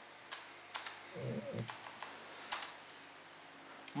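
A few sharp, quiet clicks of computer keys, scattered in small clusters, with a faint low murmur about a second in.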